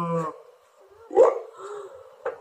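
A short dog-like whine from the animated trailer's soundtrack, loudest about a second in, rising and then falling in pitch.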